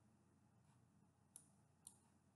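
Near silence with two faint computer-mouse clicks, one about a second and a half in and one near the end.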